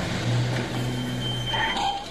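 Soundtrack of a film scene set in a car on a city street: a steady low hum over traffic noise, which ends near the close with a brief sound like a voice.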